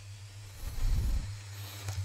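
Steady low electrical hum from the voice-recording setup, with a soft breath-like rush on the microphone about half a second in that fades after about a second.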